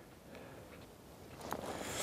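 Faint handling of an ice-fishing tip-up as its frame is turned and folded, with a few light clicks about one and a half seconds in.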